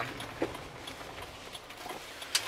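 Low, steady road and engine noise inside a moving car's cabin, with one brief faint click about half a second in.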